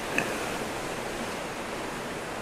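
Steady rushing noise of strong, gusty tropical-storm wind.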